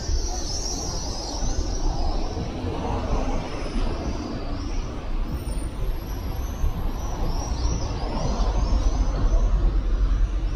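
City street ambience from a boulevard: steady traffic noise with a low rumble that swells near the end, and repeated high chirps above it.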